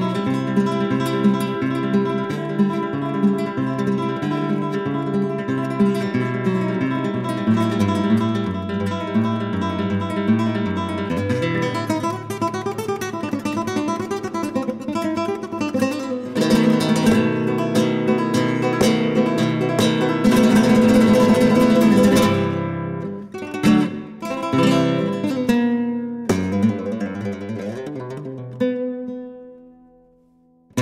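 Acoustic guitar music, plucked and strummed, with a louder, fuller passage about two-thirds through. It fades away at the very end.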